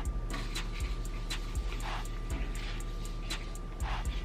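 Light clicks and taps as fine glitter is shaken from a shaker-lid jar into a foam cup, over faint steady background music.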